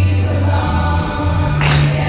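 Junior high show choir singing in full voice over an accompaniment with a strong, deep bass line. A short bright hiss cuts through near the end.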